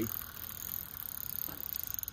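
Fishing reel clicking rapidly as line is reeled in against a hooked fish, the ticks faint at first and growing about halfway through.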